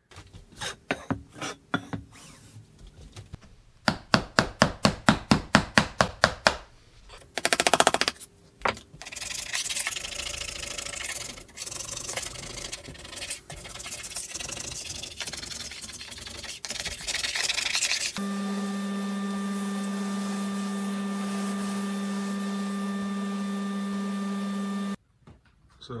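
Bar clamps being released from a glue press: scattered clicks, then a fast even run of clicks. Next, hands rub and scrape dried glue crumbs off a plywood substrate. Near the end a steady machine hum runs for several seconds and cuts off suddenly.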